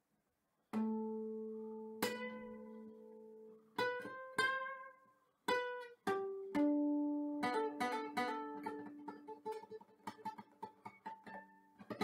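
Solo acoustic guitar played fingerstyle: after about a second of silence, single plucked notes and chords ring out a second or so apart, then a quicker run of notes follows from about halfway through.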